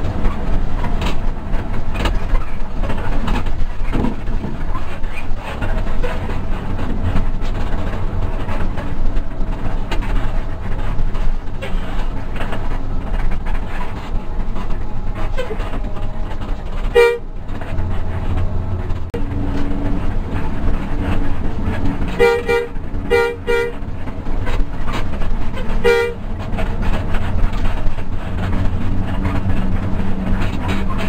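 Cabin noise of a Hino RK8 260 coach on the move: steady diesel drone, road noise and body rattles. Short horn blasts come through it, one a little past halfway, then a quick run of three toots, and one more a few seconds later.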